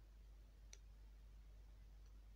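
Near silence: faint room tone with a single short click about three quarters of a second in.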